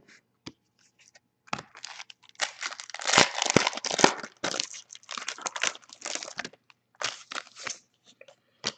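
Foil wrapper of a Panini Certified football card pack being torn open and crinkled in the hands, in a run of irregular crackling bursts. The crackling starts about a second and a half in and is busiest in the middle.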